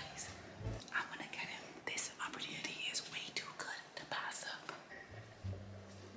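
A woman whispering in short phrases, breathy and without full voice.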